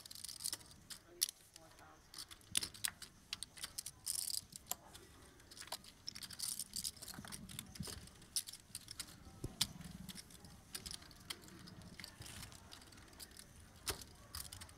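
Poker chips clicking and clacking as players handle their stacks, many small sharp clicks at irregular intervals, with faint murmured voices underneath.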